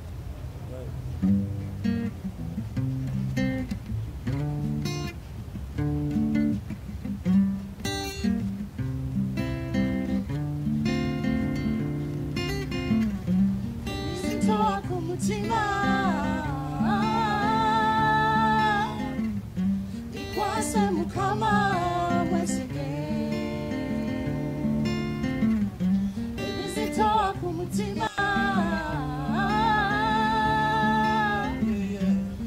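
Live acoustic guitar playing chords, joined about halfway through by a man and a woman singing together.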